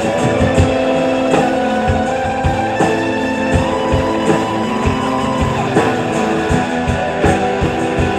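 Live rock band playing an instrumental passage: electric guitar lines held over bass and a drum kit keeping a steady beat.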